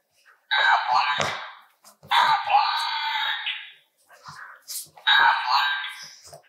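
Squeaky dog toy squeezed three times in long, drawn-out squeals of about a second and a half each, with faint clicks between them.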